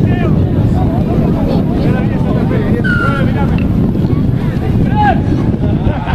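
Wind buffeting the microphone as a heavy, steady rumble, with scattered distant shouts and calls from players and spectators; one call is held briefly about three seconds in.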